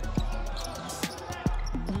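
Basketball bouncing on a hardwood court: a few irregular thuds, the loudest about one and a half seconds in.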